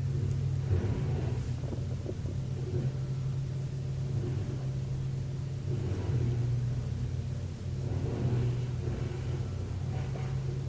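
A steady low rumbling hum that holds through the whole stretch without words, shifting slightly about six seconds in.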